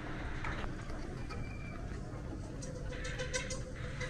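Street background noise: a steady low rumble with a faint hum, and a few light clicks around the third second.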